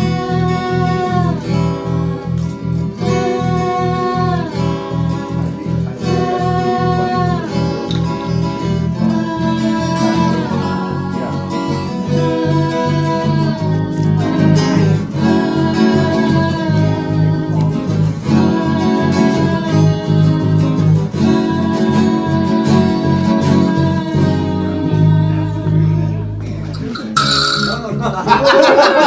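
Small band playing an instrumental intro: electric bass and acoustic guitar over a steady pulse of repeated low notes, with a lead melody that slides between held notes. Near the end the pulse gives way to longer held notes and the playing stops.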